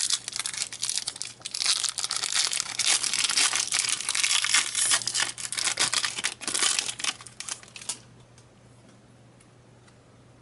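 A foil Pokémon card booster pack wrapper torn open and crinkled by hand, a dense crackling that stops about eight seconds in.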